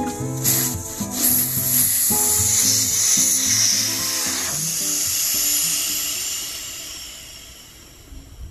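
Air hissing out of a tyre's Schrader valve stem as the valve core is unscrewed and pulled out. The hiss starts about half a second in, is loud for a few seconds, then fades away as the tyre deflates, with background music underneath.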